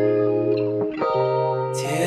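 Instrumental passage of an indie pop song: sustained guitar chords through effects, changing to new notes about a second in. A bright, noisy swell rises in the high end near the end.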